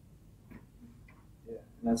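Quiet room tone during a pause in the talk, with a few faint soft sounds, then a man starts speaking near the end.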